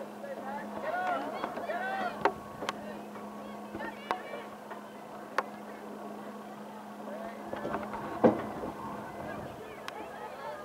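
Soccer game sounds: shouts from players and spectators, mostly in the first half, and several sharp thuds of a soccer ball being kicked, the loudest a little past eight seconds in. A steady low hum runs underneath.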